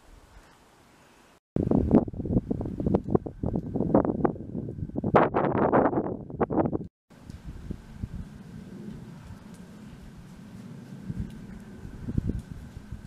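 Wind gusting across the camera microphone in loud, irregular buffets for about five seconds, then settling into a steadier, quieter wind rumble.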